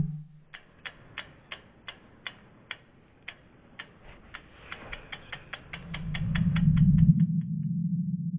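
Logo-animation sound effects: a run of sharp clock-like ticks that speed up, over a low swell that builds to a peak near the end. The ticks stop and the swell settles into a steady low hum.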